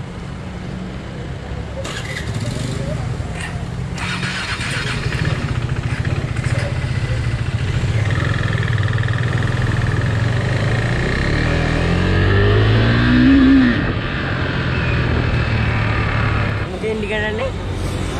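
KTM RC 390's single-cylinder engine running as the bike pulls away and gathers speed, growing steadily louder, with a rising rev about three-quarters of the way through. Wind noise on the helmet-mounted microphone builds from about halfway in.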